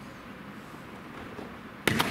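Quiet hall background, then near the end a sudden loud thud followed by a quick clatter of smaller knocks: a gymnast's feet striking the apparatus during a twisting jump.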